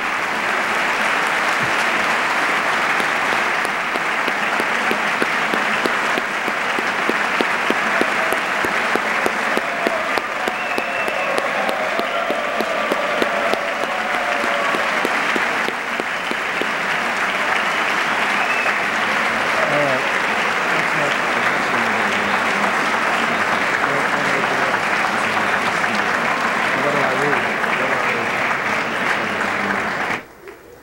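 Sustained applause from a large crowd in a big chamber, a dense, steady clapping with a few voices heard through it, cutting off suddenly at the end.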